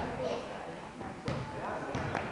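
A basketball bouncing on a hardwood gym floor, three sharp thuds spread over two seconds, under the voices of players and onlookers in the gym.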